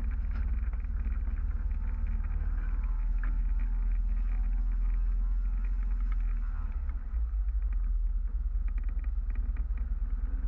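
Motor glider's piston engine running at low power as it taxis over grass, heard from the tail as a steady low rumble with a brief dip about seven seconds in.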